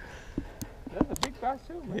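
A man's voice talking quietly, with a few short clicks in the first second.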